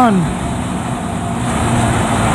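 Yamaha Vixion single-cylinder motorcycle engine running steadily under way, mixed with wind and road noise on the microphone. A short spoken word ends just as it begins.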